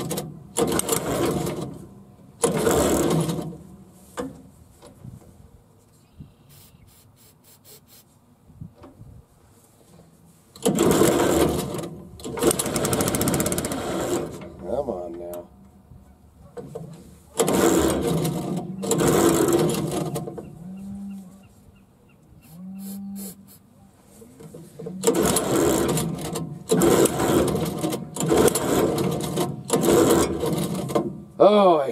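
Small gas engine on a wheel-line irrigation mover being coaxed to start with starting fluid. It comes to life in several short bursts of one to four seconds each and dies again every time.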